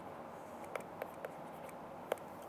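Faint light taps and scratches of a pen stylus on a tablet screen while handwriting.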